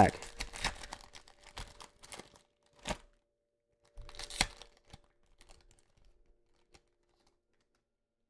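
Plastic wrapper of a Donruss Optic retail card pack crinkling and tearing as it is opened, with two sharper rips about three and four and a half seconds in. A few faint clicks follow.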